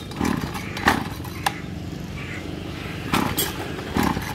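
Small 26 cc two-stroke grass trimmer engine being pull-started cold, its primer pumped and choke closed, with a few sharp clacks from the recoil starter over a low mechanical noise.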